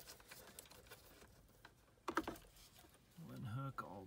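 Faint plastic clicks of wiring-harness connectors being unlatched and pulled from the back of a factory truck radio, with one sharper click about two seconds in.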